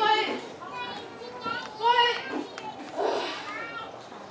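High-pitched voice in three short phrases, with quieter pauses between them.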